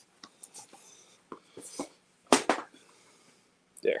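Handling noises: a scattering of light clicks and rustles, with one louder, sharper knock a little past two seconds in, as hands pick up the freshly pressed fabric face cover and bring it to the camera.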